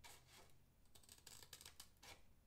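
Faint snips of scissors cutting through a thin plastic stencil sheet.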